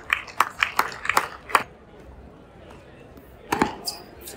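A few spectators clapping after a point, a short run of sharp, uneven hand claps that stops about a second and a half in. Near the end comes a single sharp racket-on-ball strike, the next serve.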